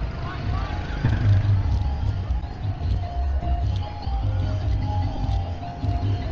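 Busy street ambience: a steady low rumble with faint music of held notes through the middle and scattered distant voices.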